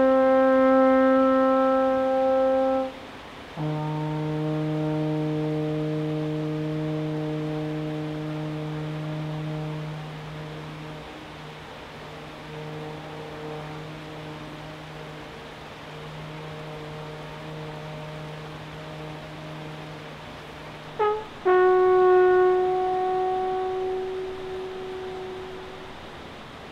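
Alphorn playing long held notes: a loud note for about three seconds, then a lower, quieter note held for about sixteen seconds as it fades, then a quick rising slur into a higher held note near the end.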